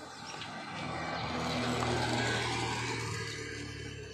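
A small motorbike passing on the road. Its engine and tyre noise grows to a peak about two seconds in and then fades away.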